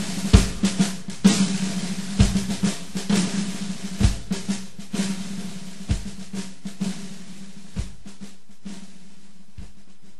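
Closing bars of a country-rock band recording, led by a drum kit: a deep kick-drum hit about every two seconds, with snare rolls and lighter hits between them that thin out. A steady low note is held underneath, and the whole slowly fades out.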